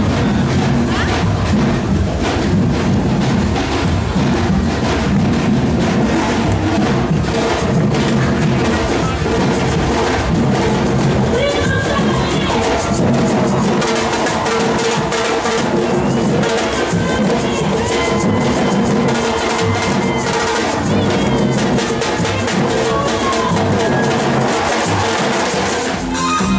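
Drum band playing: many large drums beaten with mallets in a steady, driving rhythm, with a dense run of hits throughout.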